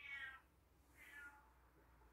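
A cat meowing faintly twice, one short meow at the start and another about a second in.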